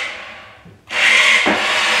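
A Maisto Tech McLaren P1 remote-control toy car's electric motor and gears whirring as its wheels run on a hardwood floor. The whir dies away over the first second, starts again suddenly, and there is a single click about a second and a half in.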